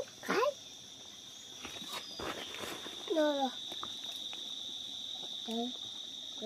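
Insects calling with a steady, unbroken high-pitched drone, and a few faint clicks about two seconds in.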